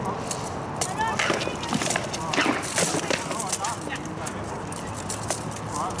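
Armoured sword-and-shield sparring: irregular sharp knocks and clanks of sword blows landing on shields and armour, with short voices now and then.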